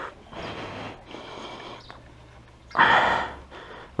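Motorcycle engine running faintly at low speed as the bike is ridden off, with a loud breathy puff close to the microphone about three seconds in.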